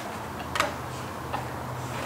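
Two short sharp clicks over a steady low room hum, the first about half a second in and louder, the second fainter a little under a second later.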